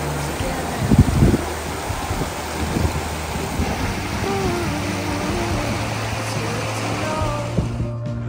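Rushing mountain stream over stones, under background music with sustained low notes and a slow melody; a couple of thuds about a second in, and the water sound cuts off just before the end.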